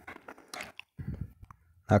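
A pause in a man's speech: a few faint, short mouth and breath sounds, with the background otherwise cut to silence.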